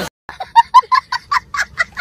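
A child's high-pitched laughter: a quick run of about eight short 'ha' bursts, roughly five a second, starting suddenly after a brief silence.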